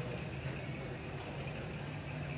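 Outdoor ambience with a steady low hum and a faint even background noise.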